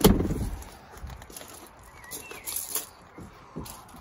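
A single sharp knock right at the start, with a short low rumble after it, then a quiet outdoor background with a faint bird chirp a little after two seconds in.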